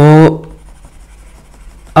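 A man's voice holds a drawn-out syllable briefly at the start. Then comes faint scratching of a stylus on a drawing tablet as he erases handwriting on a digital whiteboard.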